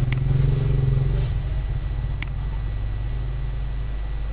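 Two sharp computer-mouse clicks about two seconds apart, over a low droning hum that is loudest in the first second and then fades.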